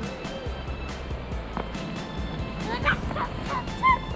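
Background music, then a child's effort shout, "eurachachacha" (a Korean heave-ho), as a quick run of short high yells near the end, the last one the loudest.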